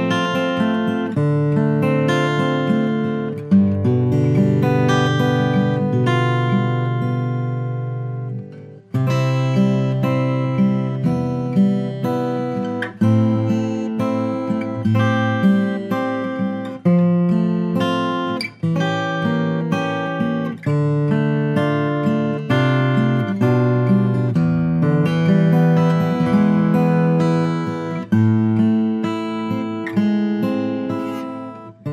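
Martin custom OM-28 acoustic guitar with an Adirondack spruce top and ziricote back and sides, played solo as ringing chords, struck afresh every second or two. About four seconds in, one chord is left to ring out and fades away before the playing picks up again.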